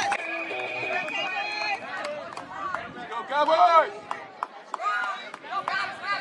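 Scattered voices calling out across an outdoor sports field, loudest about three and a half seconds in. A steady high tone lasting about a second and a half sounds near the start.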